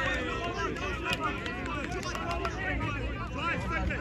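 Indistinct shouts and chatter of players and sideline spectators overlapping, with no single clear speaker.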